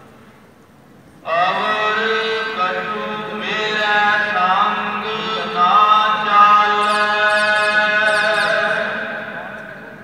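Sikh kirtan: a voice chanting gurbani in long, held phrases with slow pitch glides over a steady low drone. It starts abruptly about a second in after a brief lull and fades away near the end.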